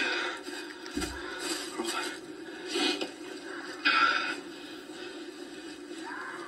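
A film's soundtrack playing from a television speaker into a small room: a quiet outdoor background with a few short rustling sounds and a brief low thud about a second in.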